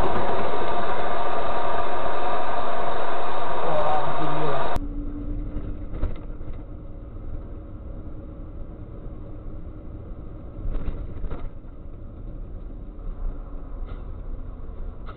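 Loud in-vehicle dashcam audio with a voice for about the first five seconds, cut off abruptly; then a much quieter steady low rumble of a truck cab driving, with a few sharp clicks.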